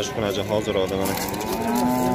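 A cow mooing: one long, steady call starting about a second in.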